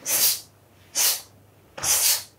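Sharp, hissing exhalations forced out with each karate technique as two boys perform a kata in unison: three short bursts about a second apart.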